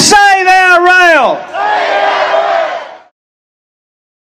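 A protester's voice shouting a chant twice, each shout held about a second and a half with the pitch falling at its end. The sound cuts off about three seconds in.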